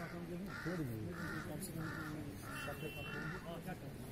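A bird calling six times in an even series, about one and a half calls a second, over low background voices.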